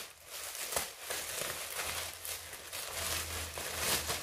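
Clear plastic garment bag crinkling and rustling as it is handled and opened, with a sharp crackle just under a second in.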